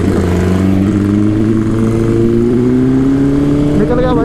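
BMW S1000RR inline-four superbike engine pulling under steady acceleration, its note rising slowly as speed climbs, with wind noise over the microphone.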